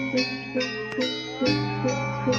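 Balinese gamelan gong ensemble playing: bronze metallophones struck in a steady beat of about two to three strokes a second, each note ringing on with a shimmer. Beneath them runs a deep low hum that swells in again about halfway through.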